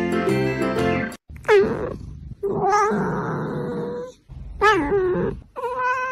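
Background music for about a second, then a cat meowing several times: drawn-out calls that fall in pitch, one of them held for over a second.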